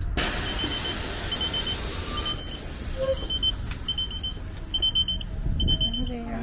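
A shuttle bus's air system lets out a loud hiss that cuts off suddenly about two seconds in. It is followed by a high warning beep repeating a little faster than once a second, over the bus's low steady rumble.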